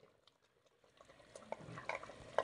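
Wooden spoon stirring beef trotters in an earthen clay pot, with faint scrapes and a few light knocks against the pot in the second half; the first second is nearly silent.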